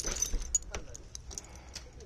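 The metal handle and latch of a van's cabin door being worked as the door opens: a short metallic rattle, then several light metallic clicks.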